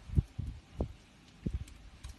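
About five dull, low thumps, unevenly spaced, from knocks or bumps close to the microphone.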